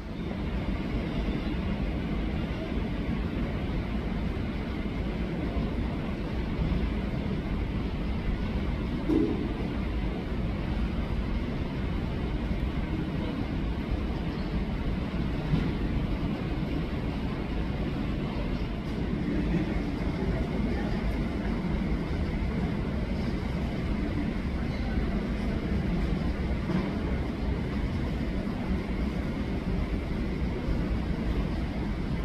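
Distant jet airliner engines on the takeoff roll, a steady low rumble that holds at an even level.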